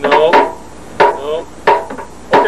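A hammer striking something hard four times in quick succession, about every half second or so, with short vocal sounds between the blows.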